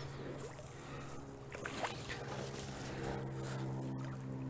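A steady low hum with a few even overtones, over the faint wash of shallow creek water.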